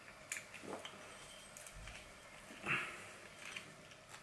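Faint clicks and rubbing from hands working a hose connector onto the end of a garden hose, with one short louder sound about two and a half seconds in.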